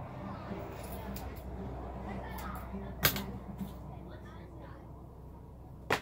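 Electric dog grooming clipper running with a steady hum, with a sharp click about three seconds in and another near the end.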